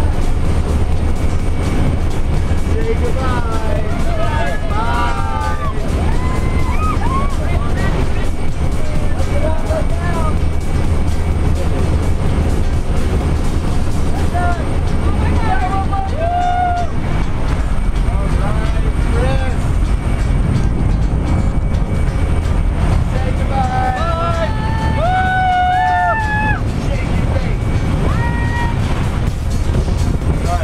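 Loud steady roar of a small jump plane's engine and the rush of air through its open side door, heard from inside the cabin.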